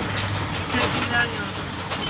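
A vehicle running, heard from inside with a cramped load of passengers: a steady low engine hum and road noise, with men's voices over it.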